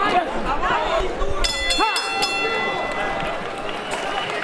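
Boxing ring bell struck a few times in quick succession about a second and a half in, its tone ringing on briefly, signalling the end of the round. Crowd voices and chatter run underneath.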